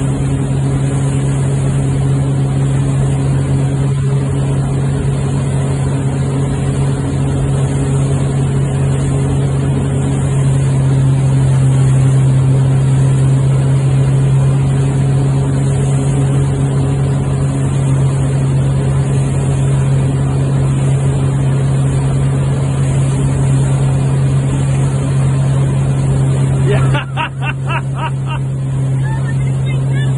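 Motorboat engine running at a steady towing speed with a constant low drone, over the rushing of water in its wake. Near the end the engine note dips briefly.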